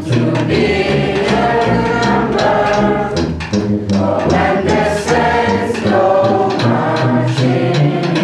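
A student wind orchestra playing, with clarinets, saxophones and bassoons sustaining chords and regular short sharp accents running through the music.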